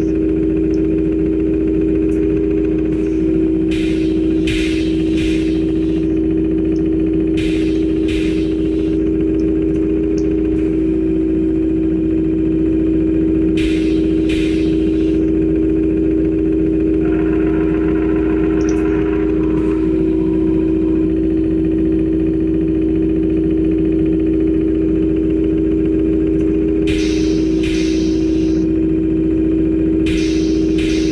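Steady motor hum of a simulated conveyor, with short hissing bursts every few seconds.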